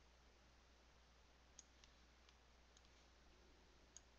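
Near silence with a steady faint low hum, broken by a few faint computer mouse clicks from about a second and a half in, as labels are dragged and dropped.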